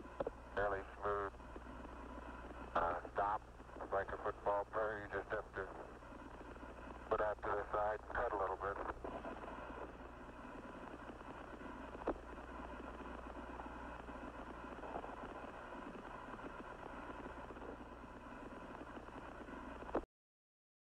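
Apollo 11 air-to-ground radio from the lunar surface: a man's voice over a narrow, hissy radio link in short stretches during the first nine seconds, too garbled to make out. After that there is only steady radio hiss over a low hum, broken by a single click about twelve seconds in.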